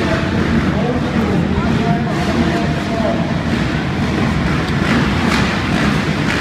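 A pack of motocross bikes running at the start gate, many engines idling and blipping together in a steady low din.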